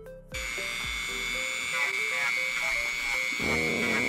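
A Dremel rotary tool fitted with a 240-grit sanding band starts up a moment in and runs with a steady high whine. Near the end the band is set against the craft foam, and the sound grows louder and rougher as it sands.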